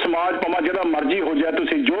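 Only speech: a person talking continuously, the voice thin and cut off above the middle range as it is over a telephone line.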